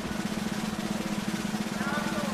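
Snare drum roll sound effect, a fast, steady roll held at an even level, the kind that builds suspense before a result is announced.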